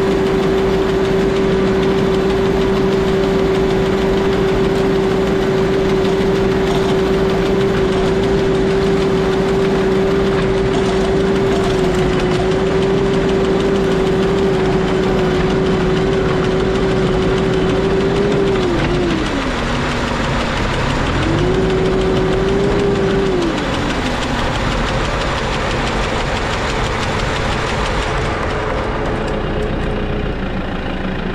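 New Holland 4040F vineyard tractor running with its Colombardo single-blade hedge trimmer driven, a steady machine whine over the engine. About two-thirds through, the whine drops in pitch, climbs back for a couple of seconds, then falls again.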